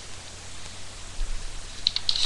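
Steady hiss and low hum from a webcam microphone, with a few quick rustles near the end as a sheet of drawing paper is moved.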